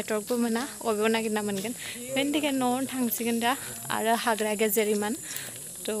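A woman talking, in short phrases with brief pauses, over a steady high-pitched hiss in the background.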